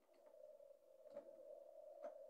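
Faint steady electrical whine from a running power inverter in a toolbox power bank, with a faint click about a second in.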